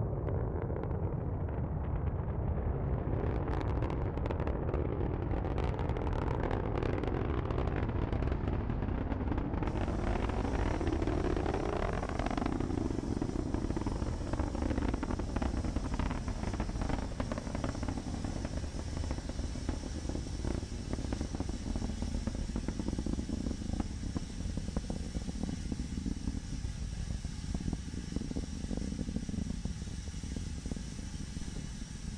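Falcon 9 rocket roar arriving from a distance as a deep, continuous rumble. Harsh crackling runs for several seconds near the start, and slow rising and falling sweeps pass through the rumble.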